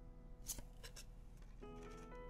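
2024 Topps Series 2 baseball cards handled in a stack: a crisp swish of a card sliding off the front about half a second in, then a couple of softer flicks near one second. Soft background music with held notes plays underneath.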